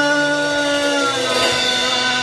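Rock band playing live in a rehearsal room: electric guitar and a male singer, with one long held note that fades after about a second.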